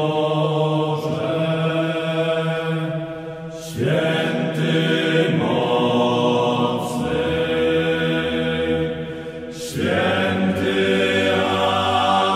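Music: a slow, chant-like hymn in long held notes, with phrases that fade and start again about every six seconds.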